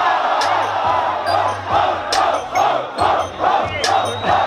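Crowd of spectators shouting and cheering after a rap-battle punchline, falling into a rhythmic chant of repeated shouts a little more than twice a second. A bass-heavy beat plays under it.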